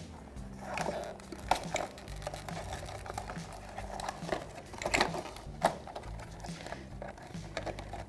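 Clear plastic clamshell package for a wheel-lock key being handled: scattered sharp plastic clicks and crinkles, about seven in all, over soft background music.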